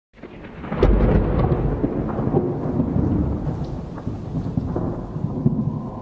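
Thunderstorm ambience: thunder rumbling over steady rain, fading in over the first second with a deep rumble about a second in.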